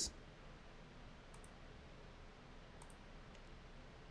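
Near silence with two faint computer mouse clicks, about a second and a half apart.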